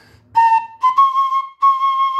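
A fife playing three separately tongued, sustained notes: one note, then two repeated on a step higher.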